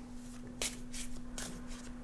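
Soft rustle and a few brief flicks of cards as a hand thumbs through a deck of playing cards.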